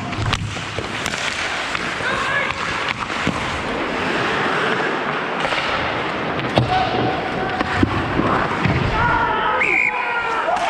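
Ice hockey play heard from the ice: skate blades scraping, sharp clacks of sticks and puck starting with the faceoff, and players shouting. Near the end a goal goes in and there is a short high shout.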